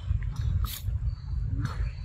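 Macaques feeding on mango: sharp wet clicks of the fruit being bitten and a short animal call near the end, over a steady low rumble.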